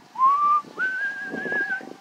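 A person whistling two notes: a short rising note, then a longer, higher note held for about a second.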